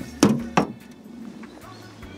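Two sharp knocks of a hand earth auger against a metal wheelbarrow, about a third of a second apart, near the start.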